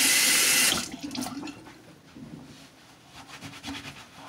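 A sink tap running hard as hands are rinsed of sticky hair product; it shuts off abruptly just under a second in. After that come faint rustling and a few small ticks.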